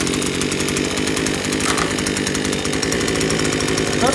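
Maruyama 26cc two-stroke brush cutter engine (34 mm bore) running steadily, just fired up, with an even rapid firing pulse.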